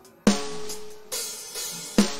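Addictive Drums 2 sampled acoustic drum kit (Studio Pop kit) playing a preset pattern: a drum hit with a ringing tone about a quarter second in, a cymbal wash from about a second in, and another hit near the end.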